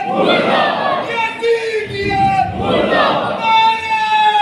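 A man's voice calls out a long held, falling line, and a large crowd of men answers with a loud shout in unison, twice: a call-and-response slogan chant.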